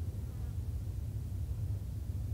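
Steady low drone of a Boeing 777-200ER's jet engines at taxi idle, a deep even rumble with a faint buzz.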